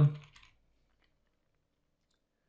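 A man's spoken word trails off, then near silence broken by a few very faint computer-keyboard taps as text is deleted.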